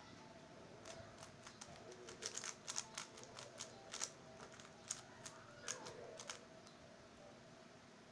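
MF3RS stickerless 3x3 speedcube being turned fast during a solve: a quick, irregular run of light plastic clicks as the layers snap round, which stops near the end.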